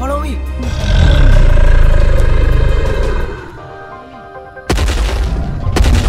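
A loud, low dinosaur roar sound effect lasting about two and a half seconds, over dramatic background music. A sudden loud boom follows near the end.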